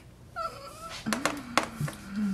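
A short high-pitched call lasting about half a second, followed by a couple of light clicks and a low murmuring voice in the second half.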